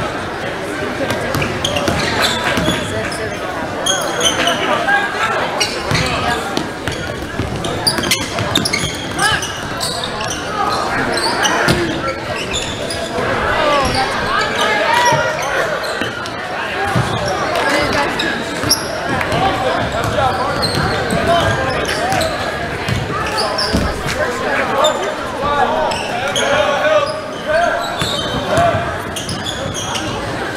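Basketball game in a gym: a basketball bouncing on the hardwood court amid crowd and players' voices echoing in the hall.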